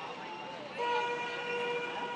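A horn sounding one steady note, starting about a second in, over outdoor street background noise.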